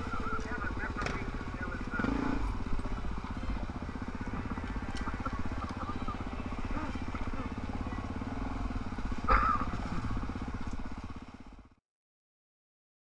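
Dirt bike's single-cylinder four-stroke engine running steadily at low throttle on a slow trail ride, with a brief louder moment about nine seconds in. The sound fades out near the end.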